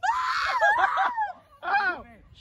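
A teenage boy's loud, drawn-out scream lasting about a second, then a shorter shout just before the end.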